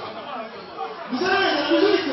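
Crowd chatter: several voices talking over one another in a large hall, none clearly made out.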